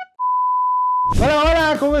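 A single steady, pure electronic beep, just under a second long, cutting off abruptly. A man's voice then starts speaking about a second in.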